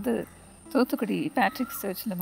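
Mostly speech: a woman talking in short phrases, with a brief pause about half a second in. A faint steady high-pitched tone sits underneath throughout.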